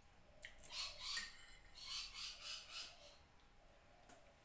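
A flock of birds calling: a run of short, harsh calls over about two and a half seconds, faint.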